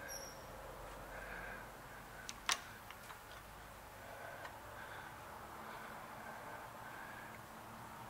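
Small tap being turned by hand in a sliding tap handle, threading a hole in a brass connecting rod: faint cutting and scraping with a few small clicks, and one sharp click about two and a half seconds in.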